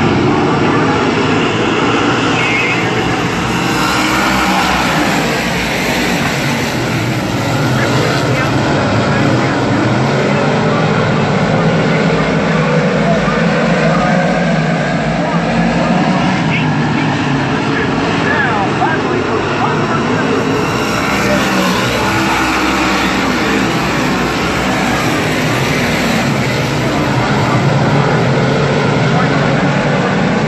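A pack of 358 modified dirt-track race cars lapping the oval, their small-block V8 engines running loud and continuous, rising and falling in pitch as cars pass.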